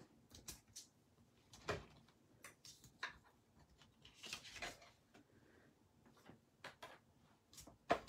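Scattered light clicks and knocks of cutting plates, a die and cardstock being handled and taken apart at a manual die-cutting machine, the most noticeable about two, three and four and a half seconds in.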